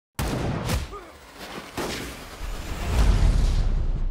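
Cinematic trailer sound effects over a black screen. A heavy boom hits just after a moment of silence and fades, a few whooshes follow, then a deep rumble swells up near the end.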